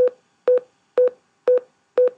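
Final Cut Pro's unrendered-audio warning beep, four short identical beeps at a steady two per second. It plays in place of the clip's sound because the iPhone 4 clip's audio is unrendered: its 44.1 kHz sample rate does not match the sequence's 48 kHz.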